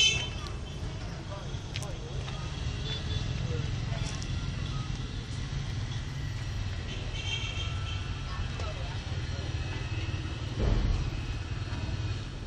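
Steady low rumble of outdoor background noise with faint voice-like or tonal sounds in the background. A brief bump sounds right at the start and another near the end.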